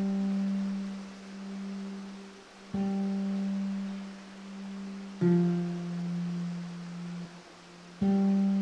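Classical guitar playing slow, sparse low notes. Each note is plucked and left to ring and fade for two to three seconds before the next, with new notes about three and five seconds in.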